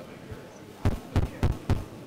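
Handheld microphone being tapped during a sound check: four dull thumps in quick succession, starting about a second in, over low room noise.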